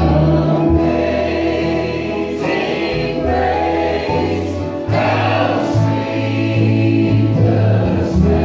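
Live bluegrass band playing a gospel song, several male and female voices singing together in harmony over acoustic guitars, mandolin, banjo, fiddle and upright bass.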